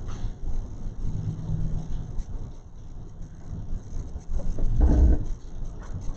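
Low, steady rumbling room noise, with a short heavier low thump about five seconds in.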